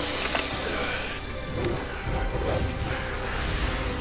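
Dramatic cartoon action score with a continuous rushing, hissing sound effect layered over it.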